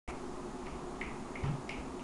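Faint short clicks repeating evenly about three times a second, with one low thump about halfway through.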